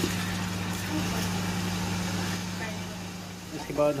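Chicken frying in oil in a large aluminium pot: a steady sizzle over a low, steady hum.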